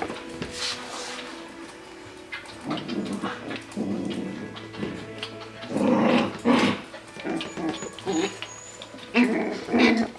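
Coton de Tulear puppies yapping in short, high-pitched bursts, loudest about six seconds in and again near the end, with whimpering in between.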